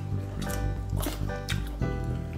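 Background music: held chords with a light beat about twice a second.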